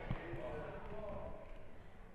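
Faint room tone in a pause between a man's spoken sentences, with a soft low thump just after the start.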